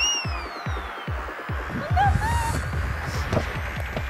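Background music with a fast electronic bass-drum beat, about four beats a second, and a high whistle-like tone that glides down slowly at the start.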